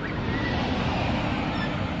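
Street ambience: a steady noisy wash of road traffic, starting abruptly at the beginning.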